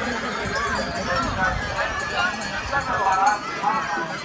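A large flock of sheep, many bleating over one another, with the scuffle of hooves on the ground and a crowd's voices mixed in.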